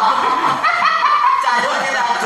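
A group of men laughing and chuckling together in short, broken bursts, loudest in the middle.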